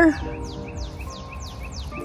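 A bird calling in a quick run of high, down-slurred notes, about four a second, with a faint steady hum underneath.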